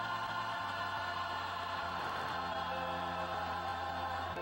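Gospel music: sustained chords with choir voices over steady held bass notes.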